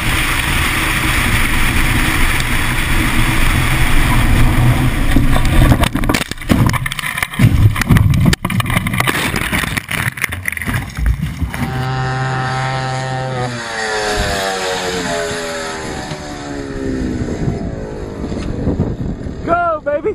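Engine and road or wind noise inside a moving car, then a run of loud crashing impacts from about six to ten seconds in as the car wrecks. After that, a dune buggy engine runs at a steady note and then slowly drops in pitch as it winds down.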